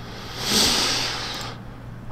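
A person's long breath out, like a sigh, close to the microphone: it starts about half a second in, swells quickly and fades over about a second.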